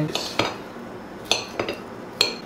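A few sharp clinks and knocks of a kitchen knife and strawberries against a ceramic bowl while strawberries are being sliced, one of them ringing briefly.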